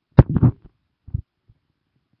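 A brief throat or mouth noise close to the microphone about a quarter second in, then two soft low thumps about a second in.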